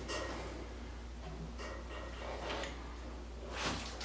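Quiet sniffing at an opened beer can over a steady low hum. Near the end comes a rush of noise as the can is tipped and nitro lager starts pouring into a glass.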